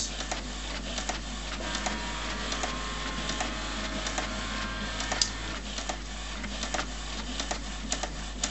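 HP Photosmart C4485 inkjet printer printing a page: the print-head carriage shuttles back and forth with scattered clicks as the paper is fed out, and a steady motor whine runs through the middle of the stretch. The printer is running normally.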